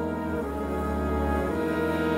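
Jazz big band playing a slow ballad: sustained horn chords over piano and held low double-bass notes, the harmony shifting about half a second in and again near the end.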